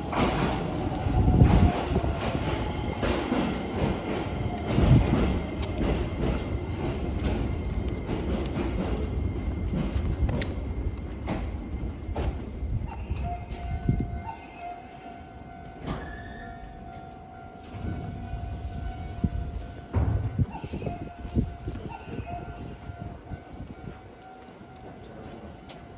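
Keisei Line electric train moving along the station platform: rumble and clatter with a falling motor whine at the start, dying down about fourteen seconds in. Steady high tones carry on through the quieter part.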